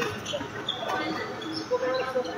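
Sports shoes squeaking briefly on a wooden sports-hall court during badminton play, with distant voices echoing in the large hall.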